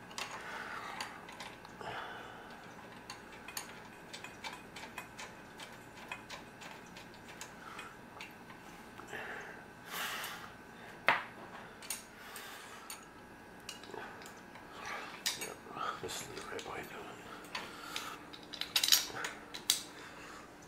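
Light metal clinks and taps as a steel bracket and bolt are fitted against a small engine: scattered sharp clicks, with a few louder knocks about ten seconds in and again near the end.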